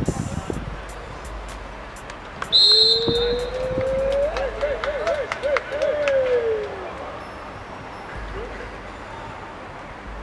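A referee's whistle blows once, short and shrill, about two and a half seconds in. It is followed by a long drawn-out call that rises, wavers and falls away over about four seconds, with scattered sharp knocks around it.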